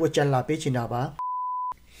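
A man talking, then a censor bleep about a second in: one steady high beep about half a second long, with the speech cut out beneath it.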